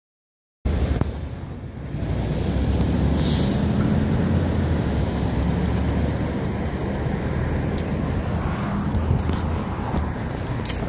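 Steady low rumble of street traffic and vehicle engines, cutting in abruptly about half a second in, with a few faint clicks near the end.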